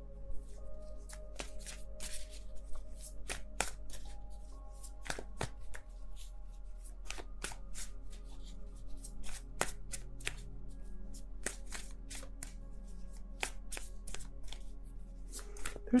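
Deck of tarot cards being shuffled by hand: a long run of irregular, crisp card snaps and flicks, over soft background music made of held tones.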